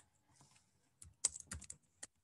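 Typing on a computer keyboard: after a near-silent second, a quick run of about half a dozen keystrokes.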